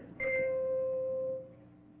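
A single struck chime note that starts suddenly and rings for about a second before fading out. It is the quiz show's signal that time is up on an unanswered question.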